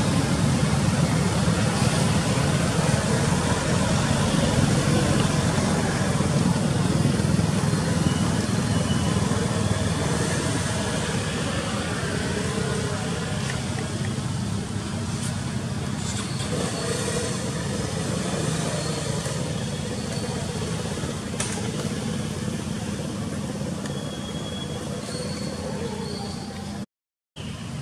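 Road traffic: cars and motorbikes running and passing close by, loudest in the first ten seconds or so and easing after, with indistinct voices in the background.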